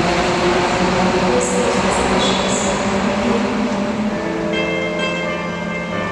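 Shanghai Transrapid maglev train pulling away along the station platform: a steady rush of noise with a low hum, easing slightly. Near the end, steady musical tones come in over it.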